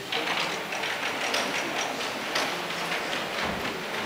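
Audience applauding: a dense clatter of many hands clapping that starts suddenly and keeps up steadily.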